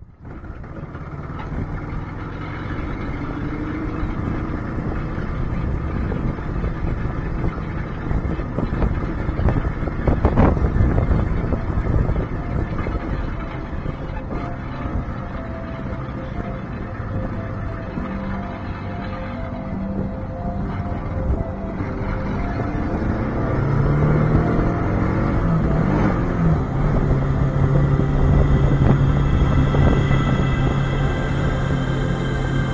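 Motorcycle riding noise, engine and wind rushing past a handlebar-mounted camera, under background music that grows stronger near the end.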